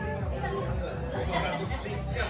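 Indistinct chatter of several voices in a restaurant dining room, with faint background music.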